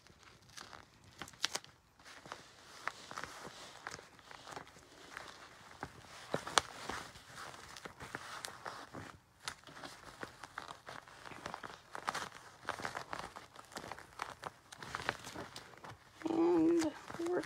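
Crinkling and rustling of a plastic shopping bag stuffed with newspaper as it is handled and duct-taped shut. It comes as irregular small crackles and clicks, with one sharper snap about six and a half seconds in.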